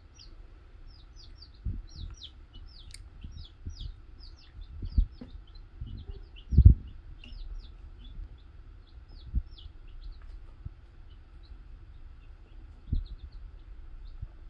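Baby chicks peeping: a constant run of short, high, falling cheeps, several a second. A few dull low thumps break in, the loudest about halfway through.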